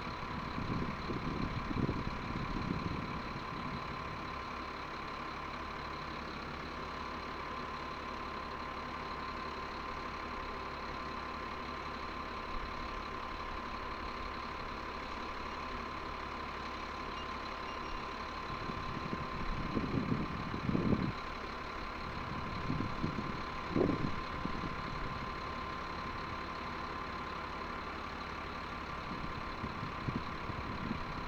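M142 HIMARS launcher truck's diesel engine running steadily, with a constant high whine over it. Louder low surges come near the start and again about two-thirds of the way through.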